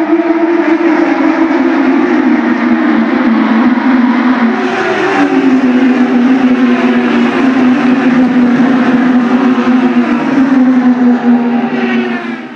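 IndyCar race cars going by at racing speed, their engines a loud, continuous whine whose pitch falls as the cars pass. About five seconds in, another group arrives, with a higher engine note that again drops away.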